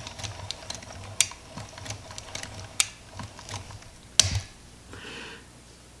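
Film advance crank of a Rolleiflex 2.8F twin-lens camera being wound, a run of irregular light mechanical clicks as freshly loaded film is wound on. The clicks stop after a louder click about four seconds in.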